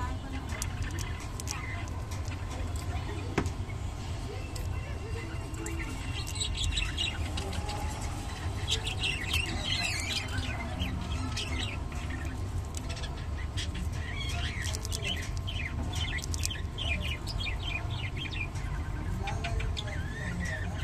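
Budgerigars chirping and chattering in bouts of quick high twittering, busiest from about six seconds in and again in the last few seconds, over a steady low hum.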